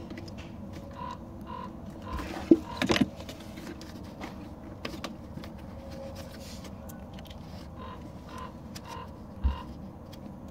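Hand twisting and tugging at a Sea-Doo's plastic reverse cable lock: faint clicks and scrapes of plastic parts, with two sharper knocks about two and a half and three seconds in and a dull thump near the end.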